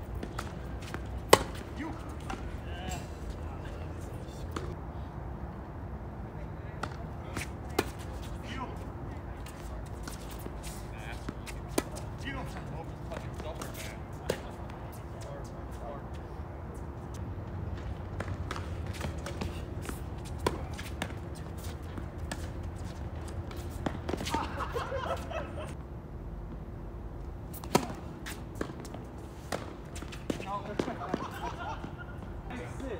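Tennis ball struck by rackets during doubles play: sharp single pocks several seconds apart, the loudest about a second in, over a faint steady hum. Faint voices come in near the end.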